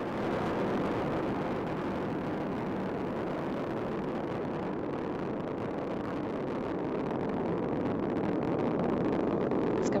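Space shuttle Discovery's two solid rocket boosters and three main engines firing during ascent: a steady, rushing rocket noise that grows a little louder near the end.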